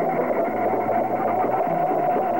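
Music from a Burmese pop song: a dense, steady passage.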